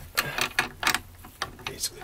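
Hand screwdriver turning a screw into a metal cabinet-strut bracket in soft cabinet wood: a series of short, irregular clicks and scrapes.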